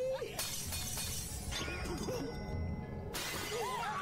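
Anime episode soundtrack: a sudden shattering crash lasting about a second, and a second burst of noise starting about three seconds in, over music.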